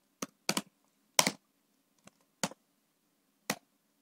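Computer keyboard keystrokes: about six separate key clicks at an uneven pace, one of them a quick double.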